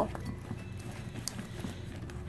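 A spoon stirring slime mixture in a bowl: faint, irregular soft knocks and clicks of the spoon against the bowl.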